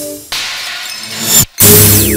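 Dramatic film sound effect: two loud crashing hits about a second apart, each starting sharply after a brief cut to silence, over a music sting.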